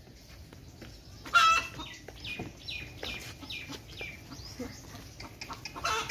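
Chickens clucking: one loud hen call about a second and a half in, then a string of short, falling clucks, two or three a second.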